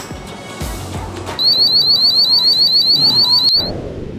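Shop anti-theft security gate alarm going off as someone walks out through the exit: a loud, rapid run of rising electronic beeps, about seven a second, that starts over a second in and stops abruptly near the end.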